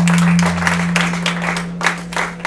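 A guitar's final note rings out and fades away, under a scattered round of audience clapping.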